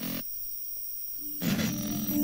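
A short blip, then a second of quiet, then a TV series' opening sequence starts playing about one and a half seconds in with a low droning sound.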